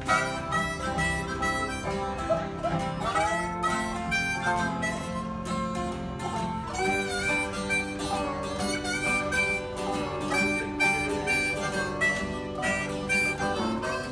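Harmonica playing an instrumental break with held, bending notes over strummed acoustic guitar and resonator guitar in a country tune.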